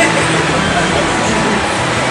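Steady background noise with indistinct voices in it.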